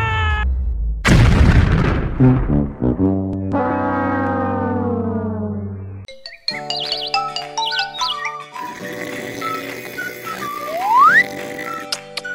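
A cartoon bomb-explosion sound effect about a second in, followed by a cartoon sound effect whose tones slide steadily downward. After a short break, light children's music with short plucked notes and a quick rising whistle-like glide near the end.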